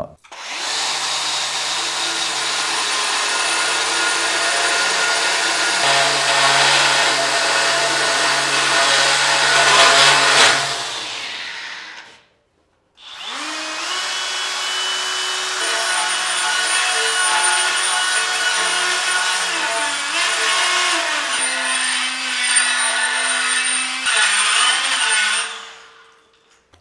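Cordless angle grinder fitted with an abrasive cone, grinding the inside of a steel pipe to smooth out burr-bit marks. It runs in two long stretches with a break about halfway, the motor note shifting as it works.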